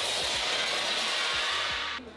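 A mirror shattering: a sudden loud crash of breaking glass that carries on as a dense, steady hiss of falling shards, then cuts off just before the end. Music plays underneath.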